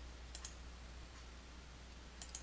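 A faint computer mouse click about half a second in, over a steady low hum.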